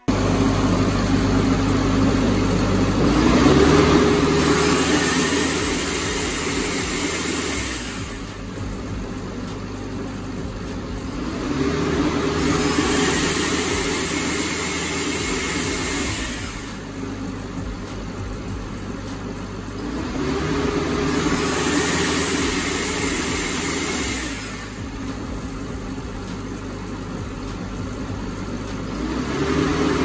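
Diesel-powered Atlas Copco portable screw air compressor running, its engine note and a hiss swelling and easing back in turn about every four seconds as it is switched between loading and unloading. The load solenoid's coil is zip-tied in place so that the valve now actually loads the compressor.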